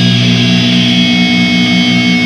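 Loud, distorted heavy metal guitar holding a sustained chord, with high ringing overtones sustained above it.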